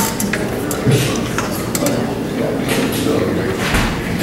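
Handling noise from sheets of music and a microphone stand being adjusted: rustles and scattered clicks, with a low bump about a second in and another near the end, over low talk in the background.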